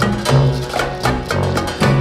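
Instrumental band music: a quick, steady percussive beat over a bass line that moves between low notes about twice a second.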